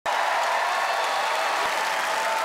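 Studio audience applauding and cheering, a steady wash of clapping.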